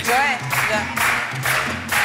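Upbeat background music with a steady beat, with a short burst of voice near the start.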